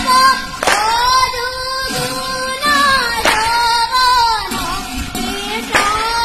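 A boy singing an Assamese devotional naam chant, his voice sliding between held notes. He strikes large hand cymbals about three times, and each clash rings on under the singing.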